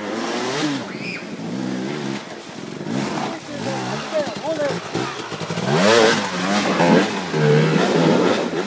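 Enduro motorcycle engine revving in repeated rising-and-falling bursts as the bike churns through deep mud, with muddy water splashing.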